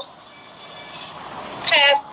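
Steady background hiss of a phone live-stream call, with a brief burst of a voice speaking near the end.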